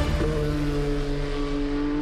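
Toyota TS050 Hybrid LMP1 prototype race car running at speed: a steady engine note that sets in a moment in and holds at nearly the same pitch.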